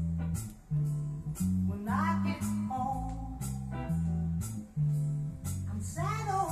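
A song played from a vinyl record through an Empire 4000 D/III L.A.C. moving-magnet cartridge: bass line, guitar and steady drum and cymbal beats, with singing.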